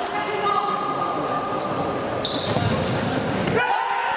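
Futsal play on a wooden indoor court in an echoing hall: the ball bouncing and being struck, short high shoe squeaks and players calling out. Near the end a long shout goes up as the shot goes in on goal.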